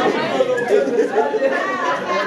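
Several people talking at once in overlapping chatter, no single voice clear.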